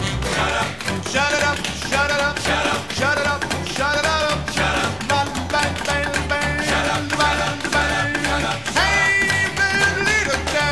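Swing-style band music in an instrumental break, with guitar over a steady bass beat; a long high note is held near the end.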